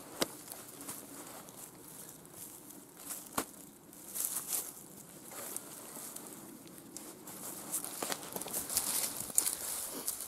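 Footsteps through dry grass and bracken, with the rustling of a jacket and an alpaca poncho being tucked and adjusted under it. A few sharp clicks come near the start, about three seconds in, and again near the end.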